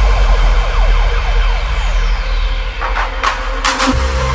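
Electronic dance music track in a build-up: repeated siren-like synth glides and a sweep over a held low bass note, with a loud hit near the end leading into the next section.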